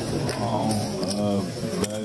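A few sharp clicks of poker chips at the table, under a drawn-out, stretched-sounding voice.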